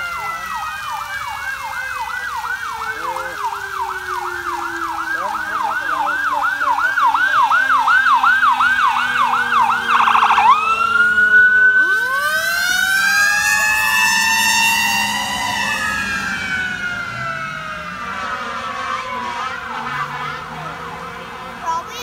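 A fire engine's siren passing. It runs a fast yelp, about three sweeps a second, and grows louder as the truck approaches. About ten to twelve seconds in, as the truck goes by, it switches to a slower wail, then fades with its pitch sliding down as the truck moves away.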